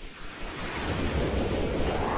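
Whoosh sound effect of an animated logo intro: a rush of noise that swells up, with a sweep rising in pitch starting about halfway through.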